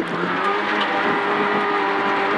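Peugeot 106 N2 rally car's four-cylinder engine heard from inside the cabin, held at steady high revs as the car takes a right hairpin.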